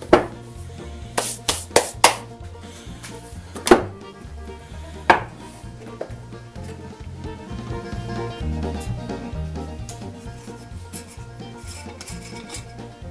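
Background music with a steady bass line, over about seven sharp knocks in the first five seconds as lengths of PVC pipe are handled and set down on a workbench.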